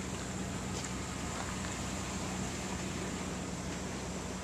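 An engine running steadily with a low, even hum, under a constant rushing noise.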